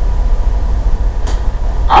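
A steady low rumble of room or recording noise with no speech, with one brief soft hiss about a second and a quarter in.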